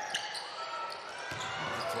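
Basketball arena ambience: crowd murmur with a basketball being dribbled on the hardwood court.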